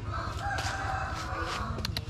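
A rooster crowing: one long crow of about a second and a half, followed by a few short clicks near the end.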